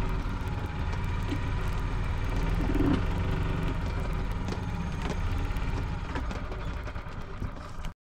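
1980 Yamaha G8 golf cart running while being driven: a steady low engine drone, with small clicks and knocks from the moving cart.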